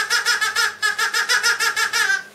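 A person's high-pitched giggling chatter, a fast, even run of short repeated notes, about seven or eight a second, voiced by the puppeteer for a toucan hand puppet.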